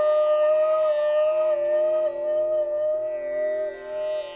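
Hotchiku (end-blown root-end bamboo flute) holding one long, slightly wavering note, with audible breath in the tone during the first half and a small dip in pitch near the end. A steady lower drone sounds beneath it.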